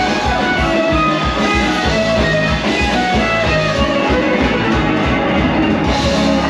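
Rock music with electric guitar over a steady, driving drum beat.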